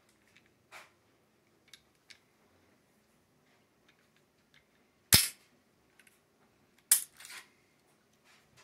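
Metallic clicks from a Smith & Wesson M&P Shield pistol being worked by hand during takedown. A few light clicks come first, then a sharp loud snap about five seconds in. A second snap follows nearly two seconds later, with a short rattle of smaller clicks.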